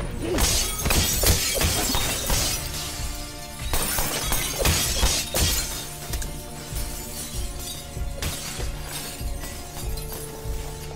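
Movie fight soundtrack: a quick run of punch and body impacts with glass shattering over music during the first half. The music carries on with only a few scattered hits after that.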